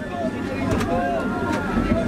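Overlapping voices of people crowding around a car, heard from inside the cabin over the car's low, steady rumble.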